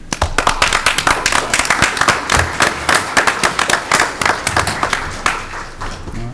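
Audience applauding: many hands clapping at once, starting abruptly and tapering off near the end.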